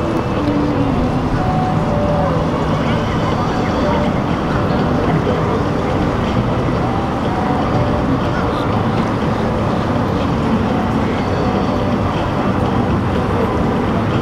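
Steady rumble of a motor yacht's engines and the rush of its wake as it runs past, with wind on the microphone and distant voices.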